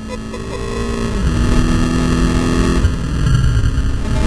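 In-cabin sound of a Volkswagen Scirocco Cup race car's turbocharged four-cylinder engine at speed, its note falling in two steps, about a second in and again near three seconds. Heavy road and wind rumble runs underneath.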